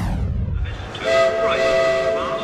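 A falling whoosh with a low rumble, then a train whistle sound effect with several notes held together from about a second in, over music.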